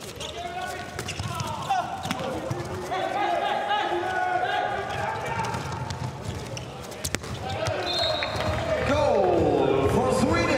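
Live court sound of a handball game in a hall with no crowd: the ball bouncing and thumping, with players' voices calling out. The level rises near the end.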